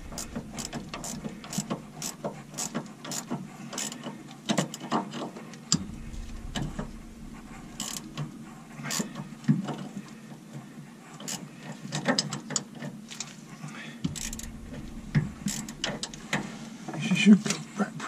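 Spanner tightening the stern gland's adjusting nuts to compress fresh packing rope around the propeller shaft: a run of irregular metallic clicks, sometimes in quick clusters.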